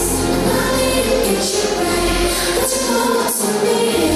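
Dance music with choir-like singing played over the hall's loudspeakers. The bass drops out for about two seconds in the middle and comes back at the end.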